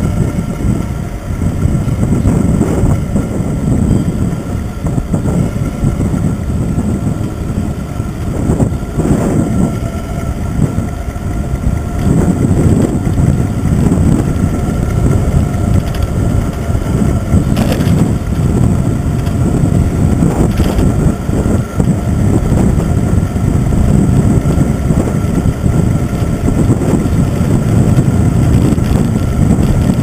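Wind buffeting and road rumble on the microphone of a handlebar-mounted camera on a road bicycle riding at speed, a loud, steady, fluttering low rumble. A couple of faint clicks come about two thirds of the way through.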